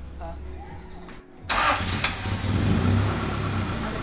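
Honda GSR (B18C) four-cylinder engine in a Civic EG starting about a second and a half in. It catches at once on the key and keeps running steadily.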